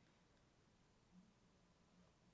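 Near silence: room tone, with one faint soft sound about a second in.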